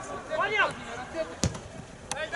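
A football kicked once, a single sharp thud about a second and a half in, after a short shout from the pitch.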